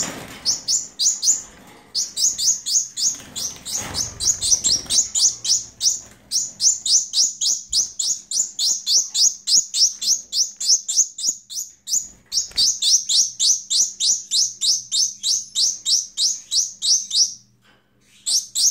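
Young Gouldian finch begging for food: a long run of rapid, evenly repeated high chirps, about three to four a second, with brief pauses, the hungry juvenile's call to be fed.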